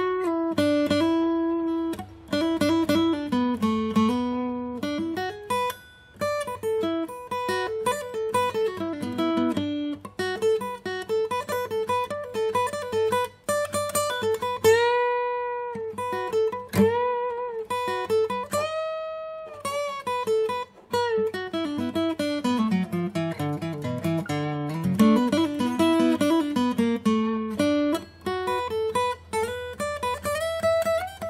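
Yamaha F310 steel-string acoustic guitar, freshly restrung and set up, played as a picked solo melody with quick runs up and down the scale. Two long held notes about halfway through bend in pitch.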